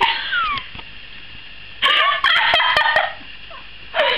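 High-pitched squealing laughter from a girl: a squeal that falls in pitch at the start, then a second shrill burst about two seconds in.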